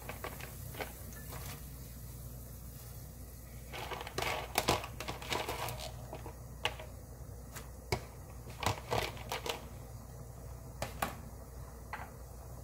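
Soybean sprouts being dropped by hand into a pot of boiling soup: scattered crisp rustles and light clicks, thickest about four to five seconds in and again around seven to nine seconds, over a low steady hum.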